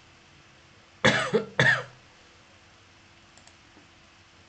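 A person coughing twice, two loud coughs about half a second apart, followed by a few faint clicks.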